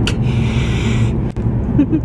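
A man's vocal impression of a cat hissing: one breathy hiss lasting under a second, over the steady road rumble of the moving car.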